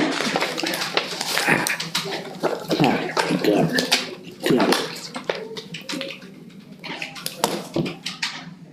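Sheets of paper rustling and being shuffled on a table, a run of crackles, with a few short squeaky sounds that rise and fall in pitch about three to five seconds in.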